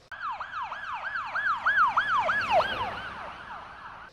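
Police car siren in the fast yelp mode: rapid wailing sweeps, about four a second, fading out toward the end.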